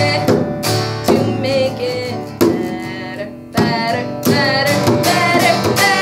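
Guitar music with a singing voice: an acoustic guitar strummed under a sung melody held with vibrato, dipping in loudness about three seconds in before the strumming picks up again.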